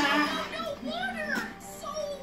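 A baby's voice, making short high-pitched sounds that rise and fall in pitch.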